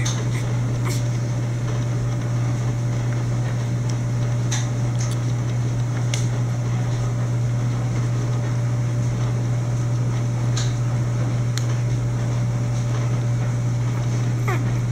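A steady low hum, unchanging throughout, with a few faint scattered clicks.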